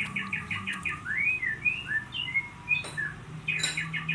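A small bird singing: a fast run of short chirps, about seven or eight a second, then a few rising, slurred whistles, then another fast run of chirps near the end.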